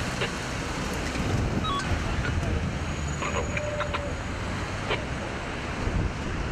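Steady road traffic noise from vehicles passing on the road, with faint voices in the background.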